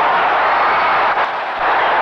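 Large boxing-arena crowd cheering and shouting, a loud, steady wash of crowd noise.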